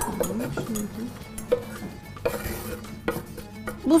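Kitchen utensils clinking and scraping in a metal saucepan, with a few sharp knocks of a knife on a wooden chopping board.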